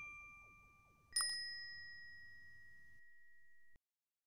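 Bell-like ding sound effects from an animated subscribe button: a first ding fades away, then a second, higher ding comes about a second in and rings on until it cuts off abruptly near the end.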